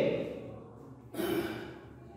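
A man's voice trails off, and about a second in he lets out a short audible breath, a sigh.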